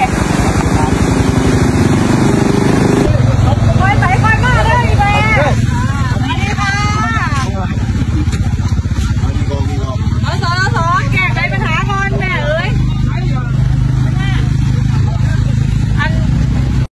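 A woman talking in short spells over a steady, loud low rumble of outdoor background noise.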